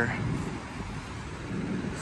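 Steady low rumble of outdoor background noise with distant road traffic.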